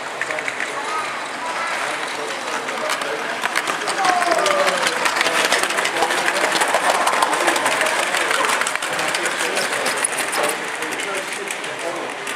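Large-scale model goods train of vans and open wagons running past close by, its wheels giving a dense rapid clicking and rattle on the track. It grows loudest about midway as the wagons pass and fades near the end, over a murmur of voices.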